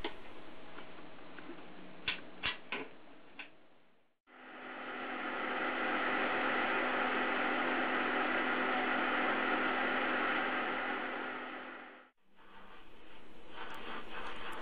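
A few light clicks as the annealing oven's door is latched shut, then a steady electrical hum with hiss from the running oven and its controller, fading in and fading out.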